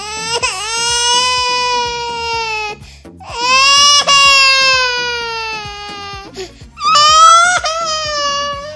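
A man wailing in three long, high-pitched cries, each held for a few seconds, over background music with a steady beat.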